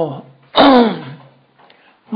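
A man clearing his throat once: a sudden harsh start that trails off in a falling voice over about half a second.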